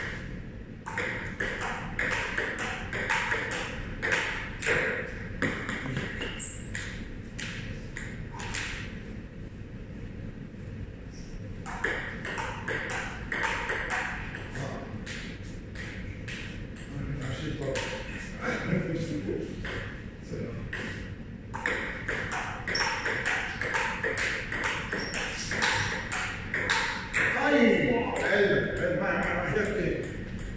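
Table tennis rally: the ball clicking off the paddles and bouncing on the table, about two hits a second, with short pauses between points.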